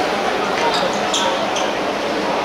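A football knocking against a hard court surface as it is kicked and bounces, with a sharp knock right at the start, over the steady noise of the game.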